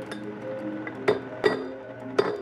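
Hammer striking a metal chisel that cuts into inkstone slab: sharp clinks, two close together about a second in. Background music with sustained melodic notes runs underneath.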